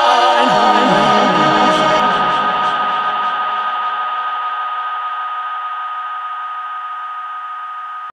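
Electronic music ending: the drum beat stops, a short run of low synth notes steps downward, then a held synth chord slowly fades out. The sound comes from a Yamaha QY10 sequencer played through a Zoom multi-effects pedal.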